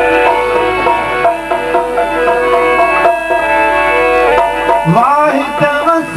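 A harmonium plays a held-note melodic interlude, accompanied by a dholak hand drum keeping the rhythm. Near the end a male voice begins to sing with a rising slide.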